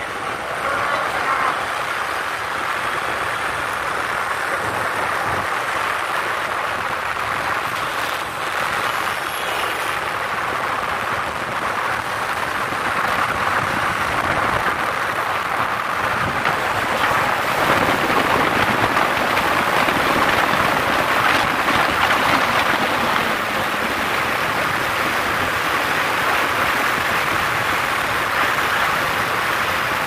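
Steady rush of wind and road noise from a vehicle moving fast along a highway, growing a little louder past the middle.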